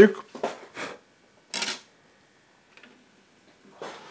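A few small plastic clicks and a short clatter as a CD is set into the disc tray of a Sansui CD-X217 CD player and the tray closes.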